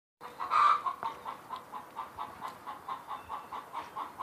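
Chicken clucking: one louder squawk about half a second in, then a rapid, regular run of short clucks, roughly four or five a second.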